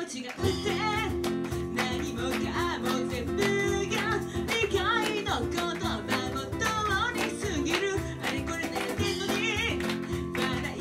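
Live acoustic pop band: a woman sings with acoustic guitar and a cajon beat. Her voice comes in about a second in over the steady guitar and drum.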